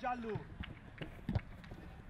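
Live pitch sound of a small-sided football match on artificial turf: a voice calling at the start, then a few sharp thuds of feet or ball over a low background.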